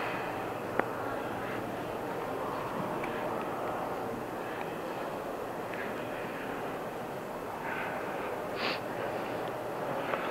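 Steady rumbling background noise of an indoor corridor, with one sharp click about a second in and a couple of faint short sounds near the end.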